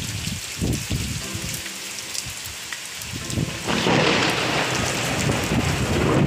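Heavy monsoon rain pouring in a thunderstorm with strong wind, low rumbles surging under the hiss of the rain. It grows louder about two-thirds of the way through.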